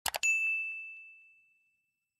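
Two quick mouse-click sounds, then a single bright bell ding that rings out and fades over about a second and a half. It is a notification-bell sound effect on the subscribe button.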